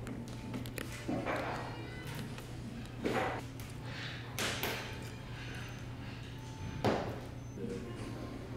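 Cutlery knocking against a china plate a few times, over the steady low hum of a dining room, with faint voices.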